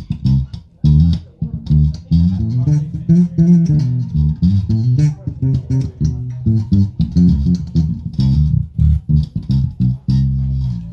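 Ernie Ball Music Man StingRay 5HH five-string electric bass played through a bass combo amp: a busy line of short, separately plucked notes with sharp string clicks and a few brief gaps.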